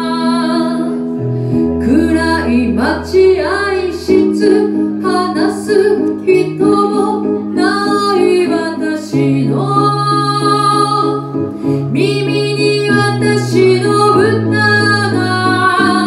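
A woman singing a slow Japanese kayōkyoku ballad live with vibrato, accompanied on a Roland VR-09 electronic keyboard playing held chords and bass notes.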